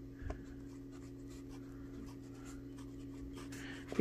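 Pen writing by hand on the paper margin of a paperback book: a run of faint, quick scratching strokes. A steady low hum sits underneath.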